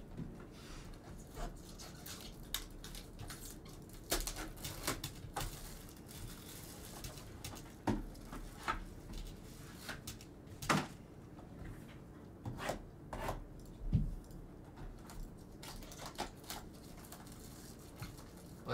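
Trading card boxes being handled on a table: a dozen or so scattered light taps, clicks and rustles of cardboard and packaging as the boxes are picked up, moved and set down.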